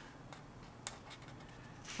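Faint scratching of a felt-tip marker drawing on paper, with one short tick a little under a second in.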